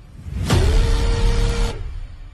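A loud horn-like sound-effect blast over a heavy, noisy rumble. The tone swoops up, then holds for just over a second, starting about half a second in. The tail of an identical blast fades out at the very start.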